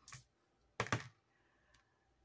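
A light click, then two small plastic dice thrown onto a paper game sheet on a table, clattering in a quick run of clicks about a second in.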